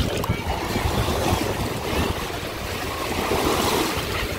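Small waves washing in over sandy shallows at the water's edge, with wind on the microphone.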